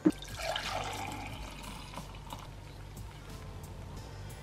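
Frothy blended coffee being poured from a blender jug into a glass, a soft steady liquid pour, with quiet music underneath.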